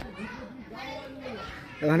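Faint voices in the background, with a sharp click right at the start. A man's voice starts up loudly near the end.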